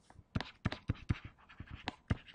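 A stylus tapping and scraping on a tablet or touchscreen as words are handwritten, heard as a quick, irregular series of light clicks.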